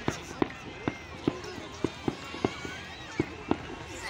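Aerial fireworks bursting overhead: an irregular run of about ten sharp bangs, a few of them coming in quick pairs.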